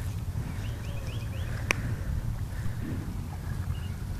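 Low rumble of wind on the microphone, with a few faint high ticks about a second in and one sharp click a little before halfway.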